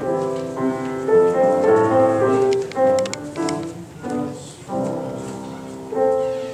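Piano playing a slow instrumental piece, chords of held notes changing every second or so.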